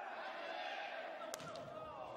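A single sharp smack about a second and a half in, a volleyball struck on the serve, over the steady hum of a gymnasium with faint players' voices.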